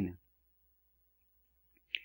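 Near silence after a man's voice trails off, with a single short click just before the end.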